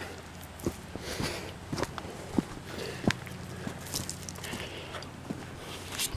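Footsteps on dirt and gravel, with scattered light knocks and handling noise about a second apart, over a faint steady low hum.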